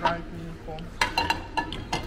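A few sharp clinks and knocks of a metal saucepan being handled on the metal pan-support grate of a gas hob.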